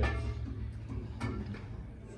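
A low musical note fading away, with a light click about a second in.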